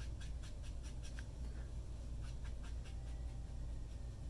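Fine round watercolour brush dabbing and stroking on watercolour paper: a quick run of light ticks, about five a second, thinning out past the first second, over a low steady hum.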